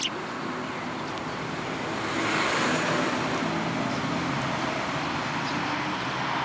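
A motor vehicle going by, its engine and road noise swelling about two seconds in and staying up, with a faint sparrow chirp or two.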